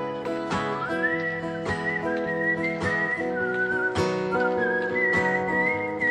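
Acoustic guitar strummed in steady chords, with a man's whistled melody coming in about a second in, sliding and wavering between notes, played live through a PA.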